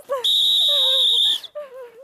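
A steady, high-pitched beep tone, about a second long, that starts and stops abruptly over a person's shouting voice; it is typical of a censor bleep laid over speech.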